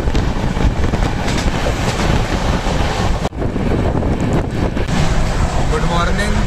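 Moving Indian Railways passenger train heard from an open coach window: a steady rumble of wheels on the track with wind rushing onto the microphone. The sound breaks off for an instant about three seconds in, then carries on.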